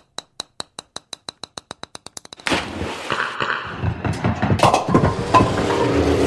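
Produced intro sound effects for a radio show: a run of sharp ticks that speed up, then, about two and a half seconds in, a sudden loud burst that carries on as a dense noisy wash.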